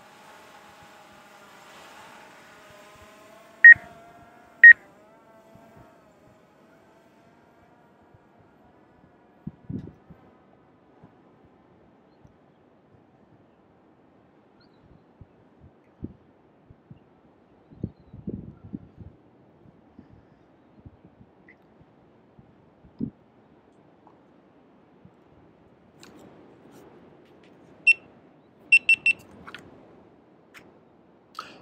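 Short electronic beeps: two about four seconds in and a quick run of higher beeps near the end. In the first few seconds a faint propeller hum from the DJI Air 2S drone sinks a little in pitch and fades as it climbs away. Scattered faint knocks come in between.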